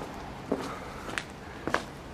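Footsteps walking down a cobbled lane: four steps, a little over half a second apart, over a low steady background.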